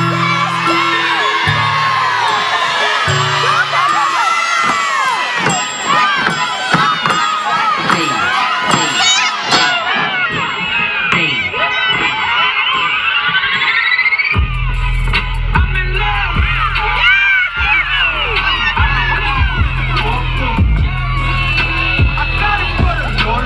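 Dance music for a stroll routine with a crowd cheering and screaming over it. About fourteen seconds in, after a rising sweep, the music changes to a track with a heavy bass beat.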